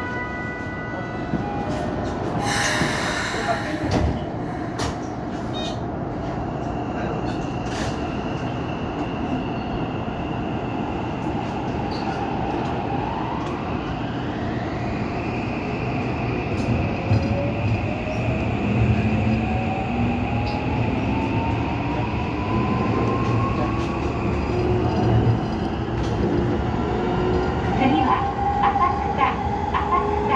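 Toei 5500-series subway train pulling away from a station and accelerating into the tunnel, heard from behind the cab. There is a short hiss about three seconds in. The traction motors' whine then climbs in pitch and levels off, a second tone rises more slowly under it, and wheel clicks over rail joints come near the end.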